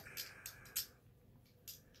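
A few faint, short rustles and clicks from small items being handled in plastic wrapping, over quiet room tone.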